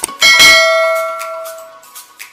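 A click, then a loud bell chime struck once about a quarter second in, ringing out over about a second and a half: the notification-bell sound effect of a subscribe-button animation, over light background music.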